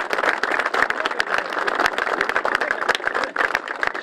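A group of people applauding: dense, steady clapping from many hands.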